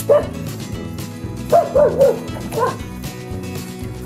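A corgi gives short, high yips while watching a cucumber held just above it, begging for a piece. There is one yip at the start, a quick run of three about a second and a half in, and one more shortly after.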